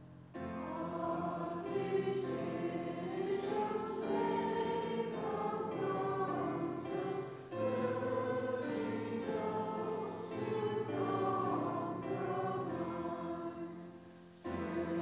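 A congregation singing a hymn together, line after line, with held notes sounding underneath the voices. The singing comes in just after the start, eases briefly about halfway through, and breaks off between lines at the end.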